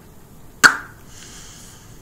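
A single sharp plastic click as a lip gloss applicator wand is pushed back into its tube, followed by faint handling rustle.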